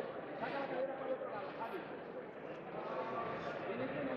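Indistinct voices of several people talking and calling out at once, an unbroken background chatter with no single clear speaker.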